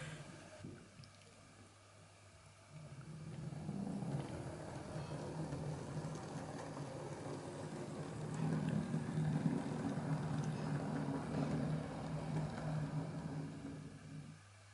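Model DMU train's small electric motor and wheels running along the track under DCC control: a steady low hum with a light rolling noise, starting about three seconds in, a little louder in the middle, and cutting off near the end as the train stops.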